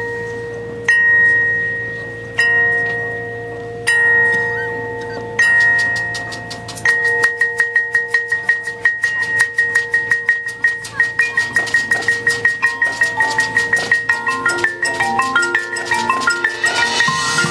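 Marching band front-ensemble mallet percussion opening the show: single struck notes ring out and fade about every second and a half. From about seven seconds in, a quick repeated high note runs at about five strokes a second over lower held notes, and more notes join near the end.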